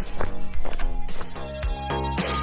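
Background music: a melody and chords over a steady knocking, hoof-like percussion beat.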